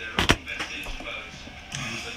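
Two sharp knocks in quick succession about a quarter of a second in, then a faint low voice near the end.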